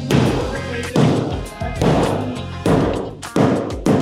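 Framing hammer striking the wooden top plate of a freshly raised stud wall, about six blows that come quicker near the end, knocking the wall into position. Background music plays underneath.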